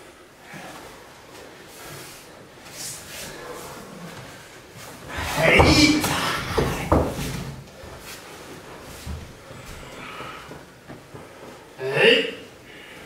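Aikido throw on dojo tatami mats: a run of heavy thuds as the partner hits the mat, ending in a sharp slap of a breakfall, with a short voiced grunt or exhalation as the throw lands.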